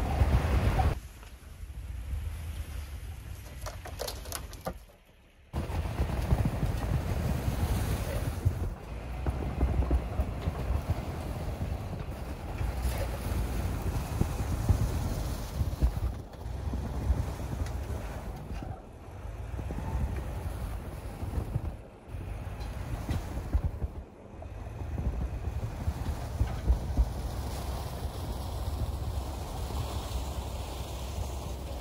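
Wind buffeting the microphone in gusts, a low rumble that drops away every few seconds, over a Lexus GX470's V8 running as the SUV reverses through packed snow.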